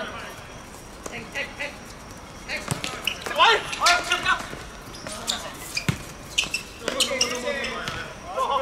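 Players calling out to one another across a football pitch, with a few sharp thuds of the ball being kicked, the loudest about six seconds in.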